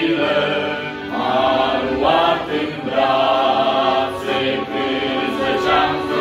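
Small male vocal group singing a Romanian Christian hymn in several-part harmony, with an accordion holding chords underneath.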